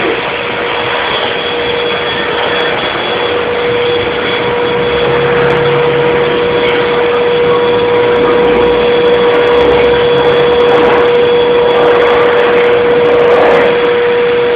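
Handheld electric paint sprayer running steadily: a constant-pitched motor whine over a hiss of air.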